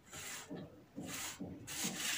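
Tailor's chalk drawn across wax-print fabric, marking the shoulder slope of a dress pattern, in about four short rubbing strokes.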